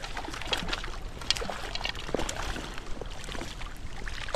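Water splashing in irregular bursts as a hooked trout thrashes at the surface and is scooped into a landing net, over the steady rush of the stream.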